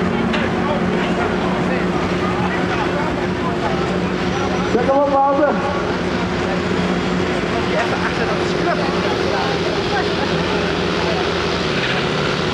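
Excavator's diesel engine running steadily while its boom holds a man-cage aloft, under the murmur of voices from an outdoor crowd. A voice stands out briefly about five seconds in.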